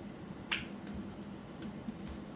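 A single sharp finger snap about half a second in, followed by a few faint ticks of hand movement, over a low steady room hum.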